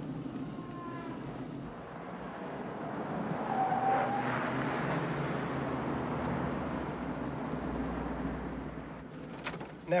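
An SUV driving past in city traffic: steady road and engine noise that swells and then fades, with a brief higher tone near the loudest point.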